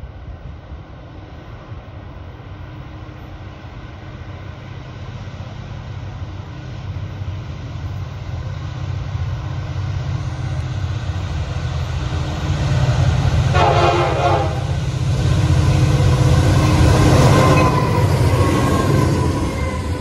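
CSX freight train's diesel locomotives approaching and passing close by, the deep engine rumble growing steadily louder. A horn blast of about a second sounds about two-thirds of the way through. Near the end the locomotives give way to the freight cars rolling past.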